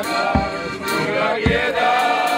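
Folk street band playing: a piano accordion with men singing along, and a bass drum struck twice, about a second apart, keeping the beat.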